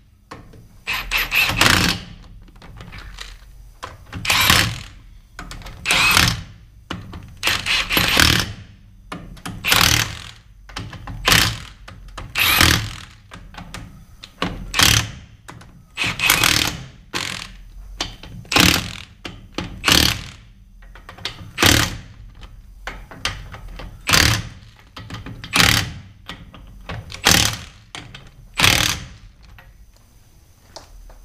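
Impact wrench running lug nuts onto a truck's rear wheel in short bursts, about one every second and a half.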